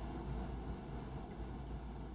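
Faint rustle of a plastic bag being gently shaken as fine crushed glass trickles out through a small hole, over a low steady hum.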